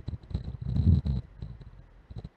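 Low rumbling handling noise with faint clicks, close to the microphone, as a spherical kaleidoscope fitted over the camera is moved around. It is loudest about a second in and fades toward the end.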